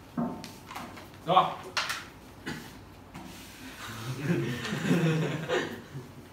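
Indistinct voices talking in a room, with a short sharp knock or two in between.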